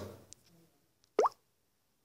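A single short water-drop 'plop' rising quickly in pitch about a second in: a Samsung Galaxy phone's touch sound as an app icon is tapped. Otherwise near silence.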